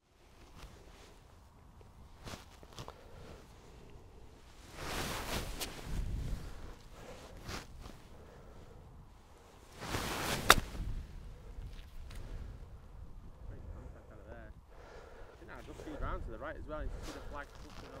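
An iron strikes a golf ball out of long rough: the swish of the downswing through the grass, then one sharp, crisp click about ten seconds in. Low rustling noise comes and goes around it, and a faint voice is heard near the end.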